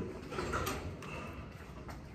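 Faint bird calls, with a couple of light clicks.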